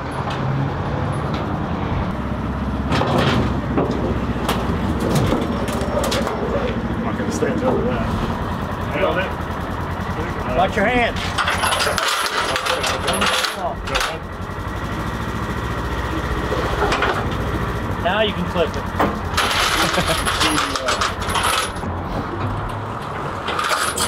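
Polaris UTV engine running as the vehicle is driven onto an aluminium trailer, then metal tie-down chains clinking and rattling as they are hooked to its front, loudest about halfway through and again near the end.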